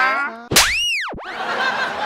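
Comedy sound effect: a sharp-starting "boing"-like tone that sweeps up in pitch and back down over about half a second, followed by a softer noisy wash.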